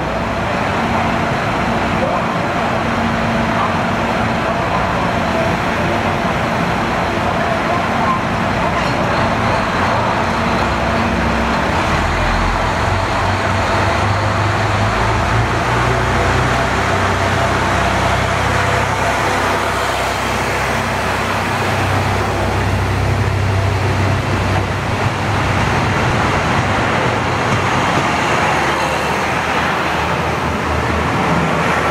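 JR Hokkaido KiHa 183 series 'Crystal Express' diesel multiple unit pulling out along the platform, its diesel engines running under power as the cars roll past. A deeper engine drone comes in about twelve seconds in and holds for roughly ten seconds.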